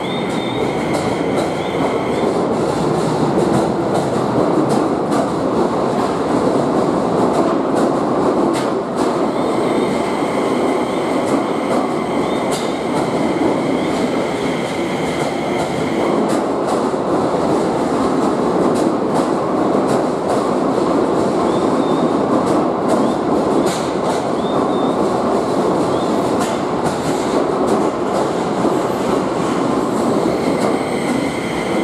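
Keio 5000 series electric train rolling slowly past at close range: a steady rumble of wheels on rail with scattered clicks over the track. A thin, high-pitched wheel squeal comes and goes several times.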